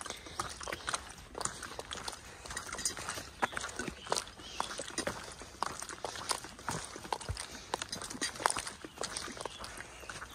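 Footsteps and trekking pole tips tapping and clicking on a rocky dirt trail while walking, an irregular run of sharp clicks several times a second.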